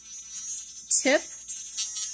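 Electric nail drill running with a steady high whine, its sanding barrel bit filing down an artificial nail tip.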